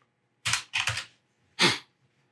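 Computer keyboard being typed on: three separate key strikes with pauses between them, the last about 1.6 s in.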